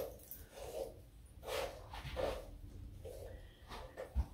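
Hairbrush drawn down through long hair to work out knots: a few faint swishes, spaced irregularly.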